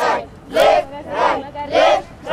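A group of children and adults chanting 'left, right' in unison as a dance count, four loud shouted words about 0.6 s apart.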